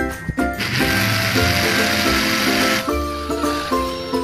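Background music with a steady run of notes. From about half a second in, a harsh hiss rises over it for about two seconds: an electric drill's bit cutting into a steel bar.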